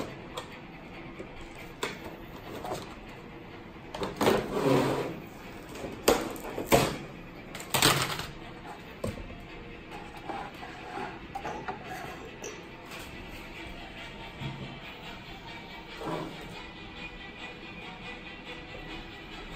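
Soft background music, with handling noise from the figure's accessories and plastic trays being moved on a wooden table. There is a rustle about four seconds in, then a few sharp knocks between six and eight seconds in.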